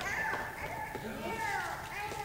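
Indistinct high-pitched children's voices chattering, with no clear words.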